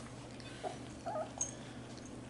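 Puppies giving a couple of faint, short whimpers near the middle, with a small click just after.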